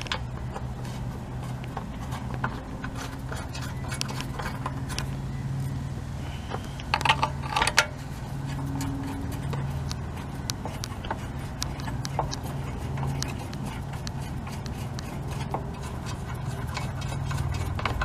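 Small metal clicks and taps of bolts being fitted by hand into a generator's steel frame, with a short burst of rattling about seven seconds in, over a steady low hum in the background.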